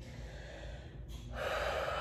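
A woman breathing while holding a forward fold: a faint breath, then an audible breath in that starts about a second in and grows louder.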